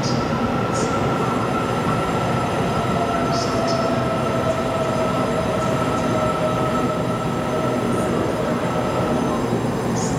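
Taiwan Railway electric multiple-unit train rolling slowly along the platform: a steady rumble of wheels and running gear, with a held electric motor whine that fades out near the end. Short high-pitched wheel squeals come about three seconds in and again at about eight seconds.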